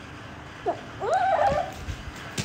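A baby monkey gives two short high squeaks: a brief one just before halfway, then a longer one about a second in that rises and wavers.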